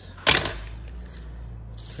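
A single sharp clack about a third of a second in: a metal square being set down on a wooden workbench. A low steady hum continues beneath it.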